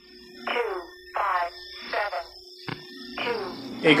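Electronic intro sound effects: three quick descending synth swoops about two-thirds of a second apart over a faint steady high tone, then a sharp click and a fourth swoop near the end.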